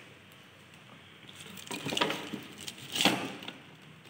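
Rustling of plastic wrapping and cardboard, with light knocks, as a plastic-wrapped dome CCTV camera is handled and set into its cardboard box. It starts about a second and a half in and comes in two short bursts, about two and three seconds in.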